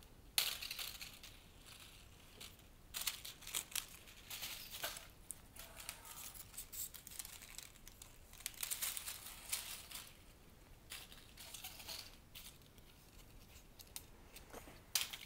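Faint, irregular rustling and crinkling of foliage and papery dried golden rain tree seed pods as they are pushed by hand into a flower arrangement.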